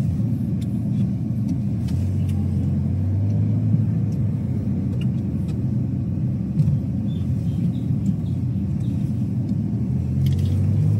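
Car driving slowly, heard from inside the cabin: a steady low rumble of engine and road noise with a low engine hum.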